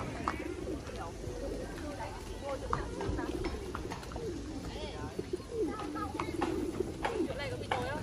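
A flock of domestic pigeons cooing, many calls overlapping continuously, with voices in the background.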